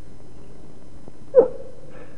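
A single short cry about one and a half seconds in, over the old soundtrack's steady hiss.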